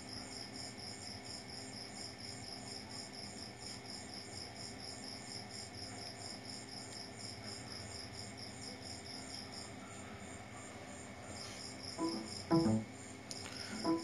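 Faint, rapid high-pitched chirping like an insect's, about five pulses a second, over a low steady hum. The chirping stops about ten seconds in. A short low sound comes near the end.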